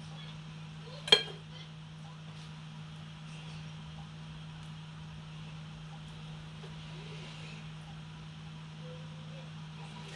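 One sharp clink of kitchenware about a second in, over a steady low hum, with a few faint taps as food is laid on a baking tray.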